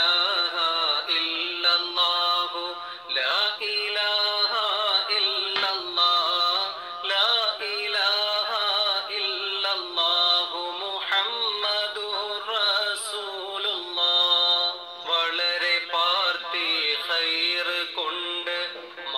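A solo voice singing an Islamic devotional song in long, gliding lines that run on with only brief breaths.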